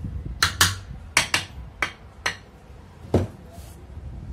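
Small hammer tapping a ceiling fan's metal motor housing into place after a bearing change: seven sharp metallic knocks at uneven intervals, the last, about three seconds in, heavier and deeper.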